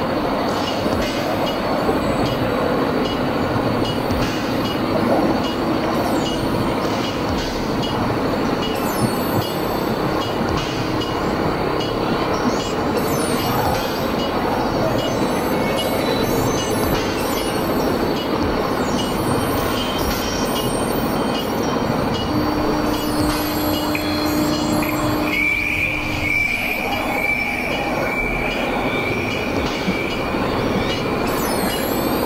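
Experimental industrial noise-drone music: a loud, dense, grinding wash of noise that runs without a break. A low held tone comes in about three quarters of the way through, and a high, thin held tone follows shortly after and lasts to the end.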